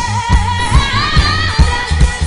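Live reggae band playing: bass and drum kit keep a steady beat of about two and a half hits a second, under a long held vocal note that wavers and climbs in pitch in the second half.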